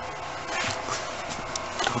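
Steady low hum inside an old railway carriage, with scattered light clicks and knocks through the middle.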